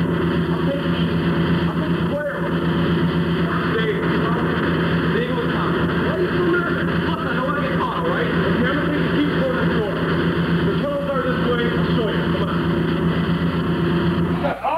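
Several young men talking over one another, too indistinct to make out, over a steady low hum.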